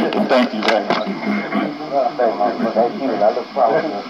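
Speech: men talking in conversation, the audio thin and lacking bass and treble.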